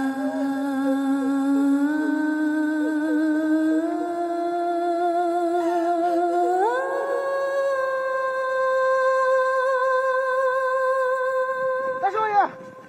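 Wordless solo voice on the soundtrack, humming a slow melody of long held notes with vibrato that climbs in steps, with a higher, sustained note from about halfway through.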